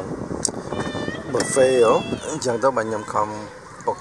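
People talking inside a car, including one high, drawn-out vocal sound about one and a half seconds in.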